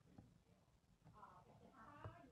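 Near silence: room tone in a pause in the talk, with two faint, brief high-pitched sounds in the second half.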